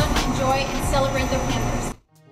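A woman talking, her voice cut off abruptly at the end.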